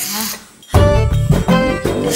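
Background music for comedy: a short swish right at the start, a brief break, then an upbeat tune with a steady beat kicks in under a second in.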